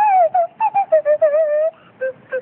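Nose flute played in a quick run of short, separate notes that step down in pitch, with one longer wavering note a little after a second in and a brief break near the end.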